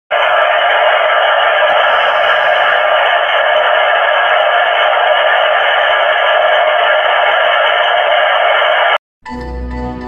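Receive audio from an RS-918 HF SDR transceiver tuned in USB to the 20-metre WSPR frequency: steady band hiss with the lows and highs filtered off and faint steady tones within it. It cuts off suddenly at about nine seconds, and intro music begins just after.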